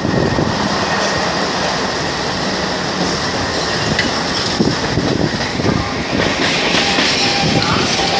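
EMU local train running at speed, heard from onboard: a steady rumble of wheels on rail with rushing air, and irregular clicks as the wheels cross rail joints. Near the end come a few faint thin high tones, like wheel or brake squeal.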